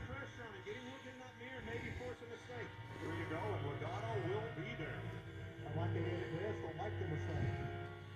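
NASCAR race broadcast playing faintly from a television across the room: the TV announcers' commentary over a low, steady drone.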